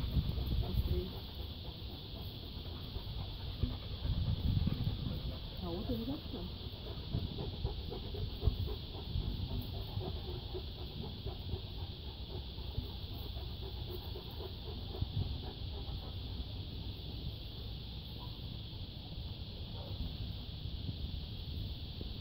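Outdoor yard ambience: a steady high-pitched drone like insects runs throughout, with low wind or handling rumble on the microphone and faint distant voices now and then.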